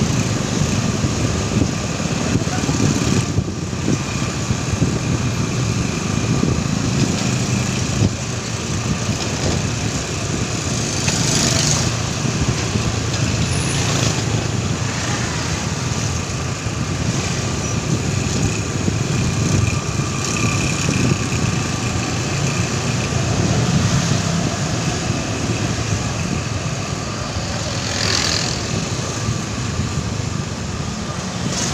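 Steady street traffic heard from a moving vehicle: motorcycle engines running, with a continuous low road rumble.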